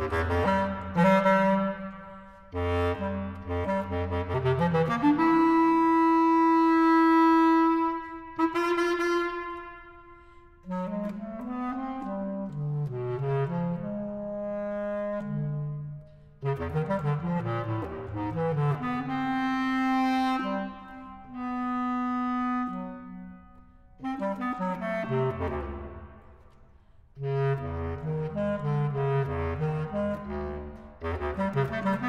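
Bass clarinet music with quick low notes and long held higher tones sounding together. The playing comes in phrases, with short gaps between them.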